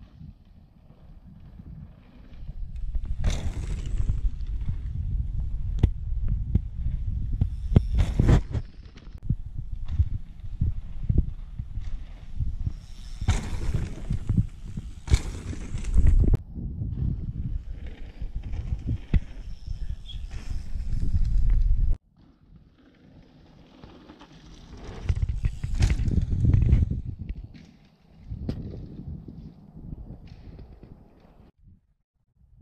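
Mountain bikes riding through dirt jumps, tyres rolling on packed dirt with several sharp knocks from landings, under a heavy low rumble. The sound cuts off suddenly about two-thirds of the way through, then builds again as another rider comes through.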